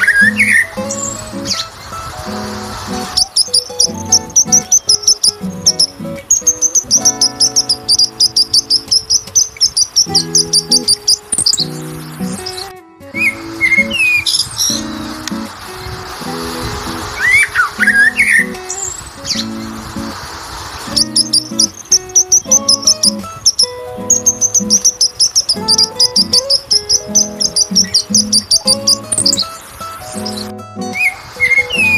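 Background music with bird-like chirps and a steady beat. The passage breaks off briefly about halfway through, then plays again.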